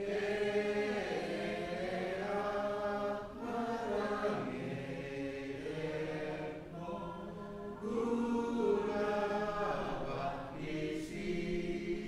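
Congregation singing a Palauan hymn in slow, drawn-out phrases, with short breaks between phrases every three to four seconds.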